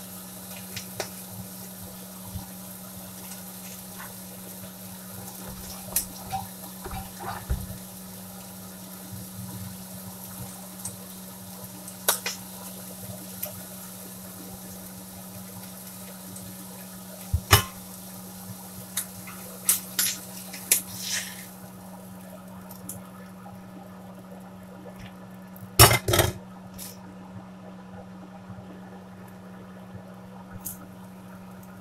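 Food sizzling in a cast iron skillet on a gas stove, a steady hiss that fades out about two-thirds of the way through, over a steady low hum. Scattered clicks and clatters of utensils and pans, the loudest a quick cluster near the end.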